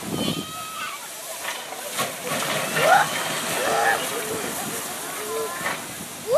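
JNR C61 20 steam locomotive hissing steam as it moves slowly forward, under the chatter and calls of children and other onlookers, with a few brief clicks.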